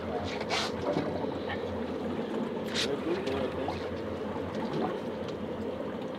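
Steady ambience of a fishing boat at sea: a low, even rumble and the wash of water and wind, with a couple of short hissing bursts, one about half a second in and one near three seconds.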